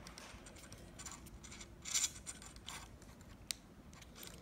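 Lew's Mach 2 baitcasting reel being put back together by hand: faint rubbing and fiddling as the side plate is fitted back on, with a few small clicks, the sharpest near the end.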